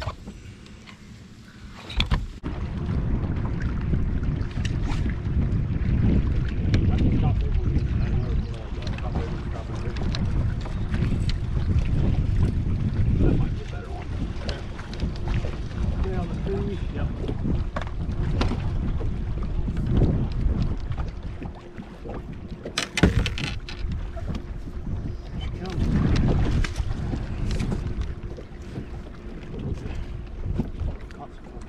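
Wind buffeting an open-air boat microphone: a heavy low rumble that surges and eases, starting suddenly about two seconds in, with a faint steady hum beneath it. There is a brief sharp clatter a little over twenty seconds in.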